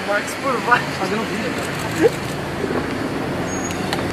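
Scattered shouts from a crowd of photographers over steady street traffic noise, with a car engine idling close by.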